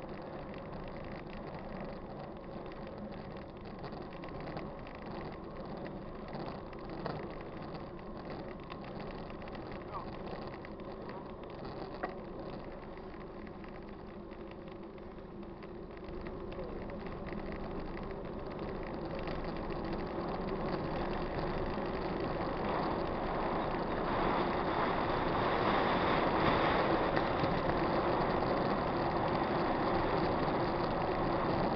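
Mountain bike riding on asphalt, heard from a camera on the bike: wind rushing over the microphone and tyres rolling, with a couple of sharp clicks. It grows steadily louder over the second half as the bike picks up speed.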